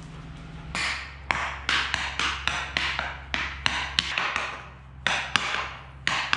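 Hockey stick blade knocking against a hockey handling ball and scraping on a concrete floor during quick stickhandling. The sharp taps come about three a second, with a short pause shortly after the middle.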